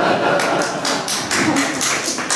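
A short, irregular run of sharp hand claps, about four or five a second, starting about half a second in.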